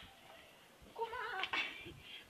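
A person's voice: after a quiet first second, a short, high-pitched, drawn-out vocal utterance with a bending pitch about a second in.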